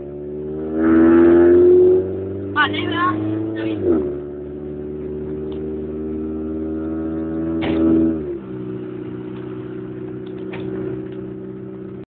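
Car engine accelerating through the gears: its note climbs slowly, then drops sharply at gear changes about four seconds in and again about eight seconds in.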